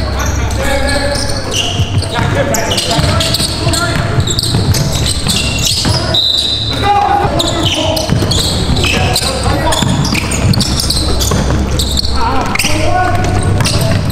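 Sounds of a basketball game in a gym: players' voices and shouts over the bouncing of the ball.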